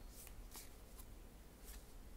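Tarot cards being shuffled by hand: a few faint, soft card swishes and snaps, about four in two seconds.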